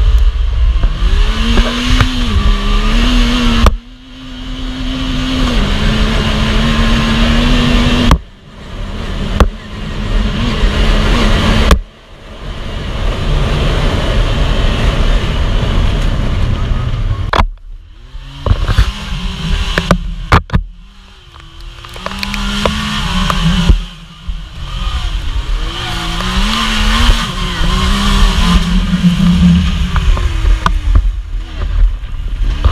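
Yamaha YXZ1000R side-by-side's three-cylinder engine driving along under throttle, its note rising and falling. The sound dips briefly about half a dozen times as the throttle comes off, with wind noise on the open cab's microphone.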